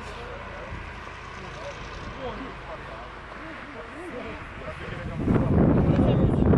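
Faint, indistinct talking over a low steady outdoor rumble. About five seconds in, a loud rushing noise sets in, typical of wind buffeting the microphone.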